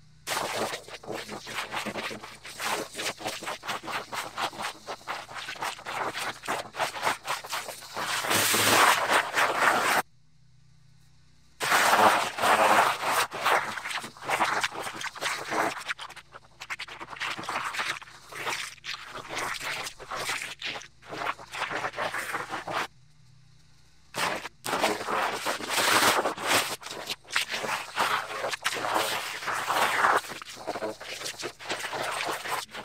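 Shovel scraping and digging packed dirt off a buried concrete sidewalk, with many quick, irregular strokes. The scraping breaks off twice for a second or so.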